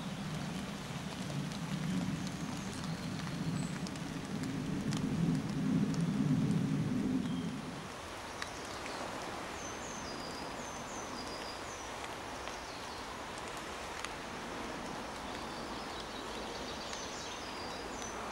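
A small songbird giving short, high, thin notes, several in quick falling pairs, repeated over the second half. A low rumble is the loudest sound for the first eight seconds and then stops; a steady hiss runs underneath.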